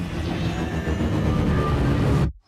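Film sound effects for an alien ship surfacing from the sea: a loud, deep, steady rumble under a rushing noise of water pouring off it.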